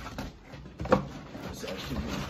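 Cardboard box being handled and shifted, with one sharp knock about a second in.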